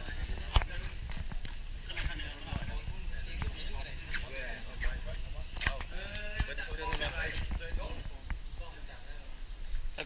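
Indistinct voices of a group of men chatting, with a steady low rumble of handling noise on the microphone and one sharp click about half a second in.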